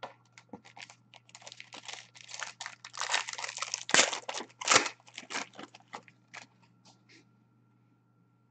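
Foil wrapper of an Upper Deck Ultimate Collection hockey card pack crinkling and tearing as it is ripped open by hand, the loudest rips about four and five seconds in, then dying down to a few light rustles.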